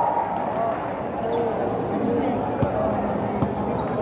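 A basketball bouncing a few times on a hardwood gym court, with people talking across the large hall.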